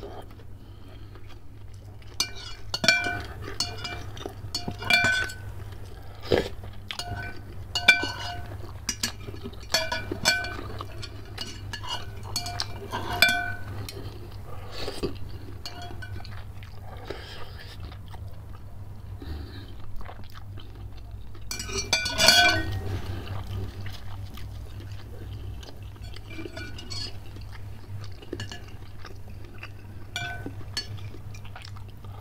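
A metal spoon and chopsticks clinking against a glass bowl, each tap ringing at the same few pitches. The taps come often through the first half, with a loud cluster a little past the middle, and chewing of bakso meatballs between them.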